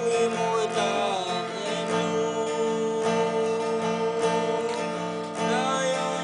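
Acoustic guitar strummed steadily, accompanying a man singing long, held notes that glide slowly between pitches.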